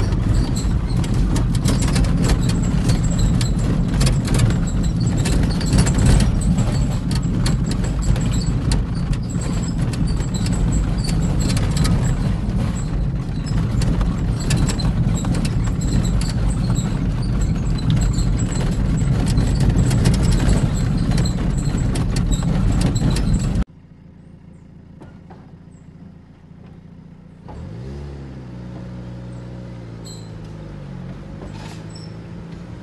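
Road noise inside a car driving on a rough dirt road: a loud, steady low rumble of tyres and suspension with many small clicks and rattles. It cuts off abruptly about three-quarters of the way in to a much quieter stretch, where near the end a low vehicle engine hum rises in pitch and then holds.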